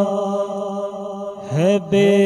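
Man singing a naat into a microphone. A held note thins out, then a new sung phrase glides in about one and a half seconds in, over a steady low hum.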